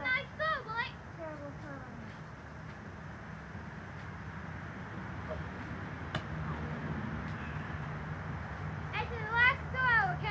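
Brief high-pitched shouts from boys near the start and again near the end, over steady outdoor background noise. There is a single sharp click about six seconds in.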